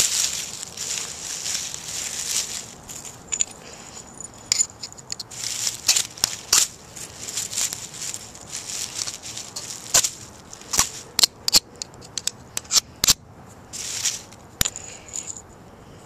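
Magnesium fire starter being scraped and struck over a pile of dry leaves and grass: a busy high-pitched scraping for the first few seconds, then irregular sharp scrapes and clicks, some in quick clusters, with rustling of the dry tinder.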